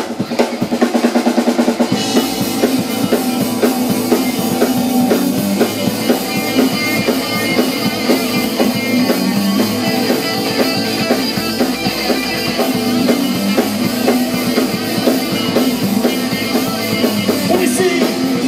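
Live rock band playing an instrumental passage without singing: electric guitars over a drum kit. The sound grows fuller and brighter about two seconds in.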